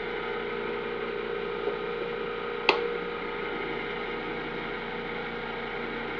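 Steady electrical hum made of several steady tones from a running SCR and SIDAC capacitor-dump pulse circuit, with one sharp click about two and a half seconds in.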